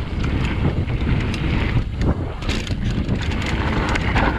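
Mountain bike descending a dry dirt and stony trail: tyres rumbling over loose gravel, with frequent sharp clicks and rattles from the bike. Wind buffets the camera microphone.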